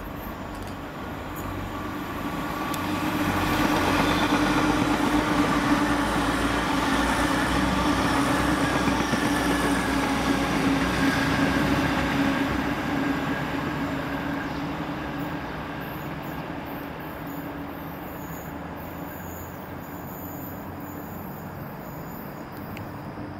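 Grand Central Class 180 Adelante diesel multiple unit running past, its diesel engines droning with a steady low hum over wheel and rail rumble. The sound grows louder over the first few seconds, holds, then fades away from about halfway through.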